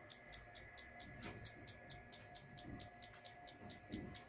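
Fuel injector on the test bench, pulsed by the car's engine computer, ticking rapidly and evenly at about eight clicks a second, over a faint steady whine.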